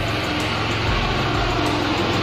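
Traffic noise from a nearby road: a motor vehicle's engine running steadily, with a low hum under a constant wash of noise.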